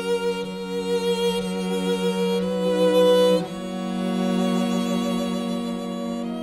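A string octet of four violins, two violas and two cellos plays sustained, slow chords with vibrato in the Andante sostenuto of a double quartet. The sound swells to its loudest about three seconds in, then the harmony shifts and the playing softens.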